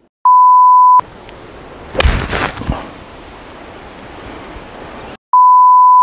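Two loud, steady electronic beeps at one pitch, the first under a second long and the second about a second and a half long. Between them is a hissing noise with a louder rough burst about two seconds in.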